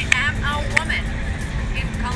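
Steady rumble of city street traffic, with a woman's voice briefly in the first second.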